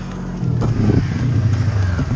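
Snowmobile engine running close by at low revs, a steady low drone that grows louder and settles lower in pitch about half a second in.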